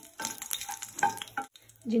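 A spatula stirring and scraping whole spices (bay leaves, star anise, cardamom pods) around in hot oil in a non-stick kadai, with a light sizzle of frying. It is a run of short scrapes and clicks that stops about a second and a half in.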